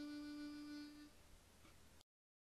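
A harmonica holding one long steady note, which ends about a second in.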